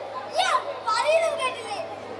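Children's voices speaking loudly in short, sharply rising and falling phrases: acted stage dialogue, in about three spurts.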